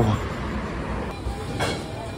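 Steady low rumble of city street traffic, giving way about a second in to the bustle of a fast-food restaurant, with a short clatter near the end.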